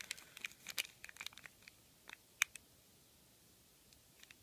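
Clear plastic bag crinkling faintly as a small figure keychain sealed inside it is handled in the fingers: scattered crinkles and ticks over the first two and a half seconds, the loudest a single sharp tick a little past two seconds.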